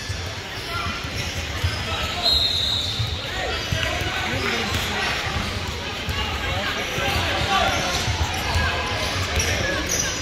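A basketball bouncing on a hardwood gym floor, with footsteps and voices echoing in a large hall.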